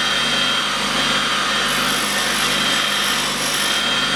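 Bench grinder running steadily, its abrasive wheel spinning at speed while a twist drill bit is sharpened on it. A brighter hiss joins about halfway through.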